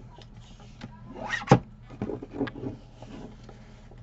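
Fiskars sliding-blade paper trimmer cutting a strip of paper: a rising sliding sound as the blade carriage is run along the rail, ending in a sharp loud click, followed by a few softer scrapes and knocks.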